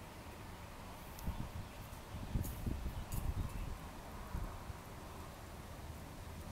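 Quiet room noise with a few faint clicks and soft low bumps from handling a computer mouse at the desk.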